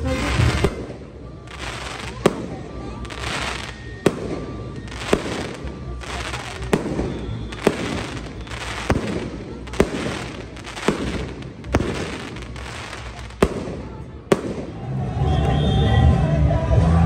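Fireworks going off: a string of about a dozen sharp bangs, roughly one a second, each with a short rush of hiss. Band music starts up again near the end.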